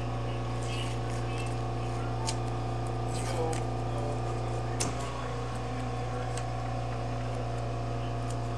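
A steady low electrical hum with several tones, with a few soft clicks and faint, indistinct voices.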